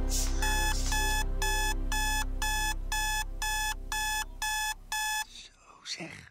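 Electronic alarm clock beeping, about ten short beeps at two a second, stopping about five seconds in. The alarm is going off to wake a sleeper in the early morning.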